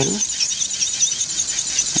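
Handheld electric nail drill (e-file) running against a fingernail, a steady high whine with short high squeaks over it.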